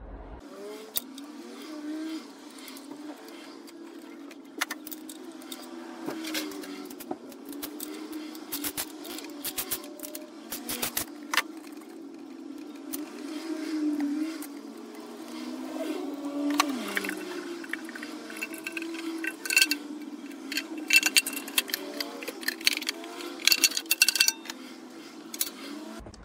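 Metallic clicks and clinks of a socket tool, nuts and washers as a Triumph TR6 aluminium rocker cover is unbolted and lifted off. The clinks are scattered and come thickest in the second half, over a steady hum.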